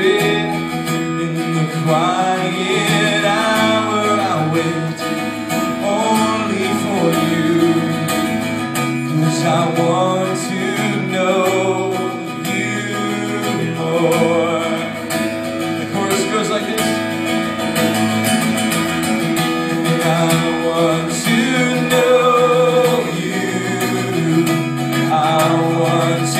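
Live worship song: a man singing while strumming an acoustic guitar, the voice and chords carrying on steadily without a break.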